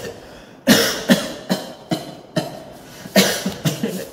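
A man coughing in a fit of about eight coughs over some three seconds, the first the loudest.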